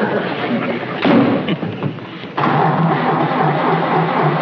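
An old car's engine being cranked and failing to catch, with a low uneven chugging. It comes in abruptly about halfway through, after a stretch of dense noise.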